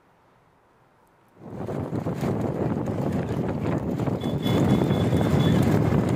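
Field sound of racing bullock carts on a tarmac road: hooves clopping and cart wheels rolling, with wind on the microphone. It cuts in after about a second and a half of near silence.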